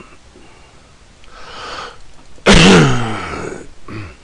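A person sneezes: a breath drawn in, then a sudden loud sneeze about two and a half seconds in, with a voiced tail that falls in pitch and dies away within about a second.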